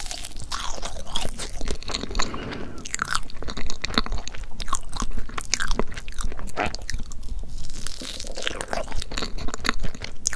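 Close-miked chewing of soft chocolate crepe cake, with wet mouth sounds and many sharp little clicks and smacks.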